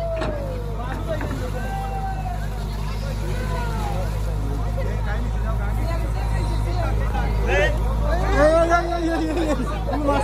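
Excavator's diesel engine running steadily under the chatter of a crowd, with voices rising near the end.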